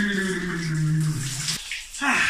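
Shower spray running steadily over a man, with a long drawn-out sigh from him that falls slowly in pitch and stops about one and a half seconds in.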